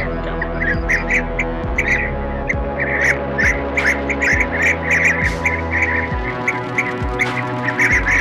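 Blue-tailed bee-eater calls from a bird-trapping lure recording: short, liquid chirps repeated about two or three times a second without pause, over a steady background of sustained musical tones.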